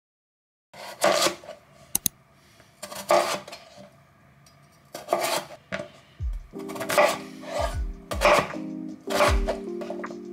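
Chef's knife cutting through raw potatoes onto a wooden cutting board: irregular sharp knocks, about one a second. Soft background music comes in just past the middle.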